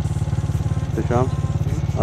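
Motorcycle engine running at a steady speed while riding, a low, even drone.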